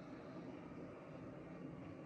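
Faint, steady background noise with no distinct event: quiet room tone.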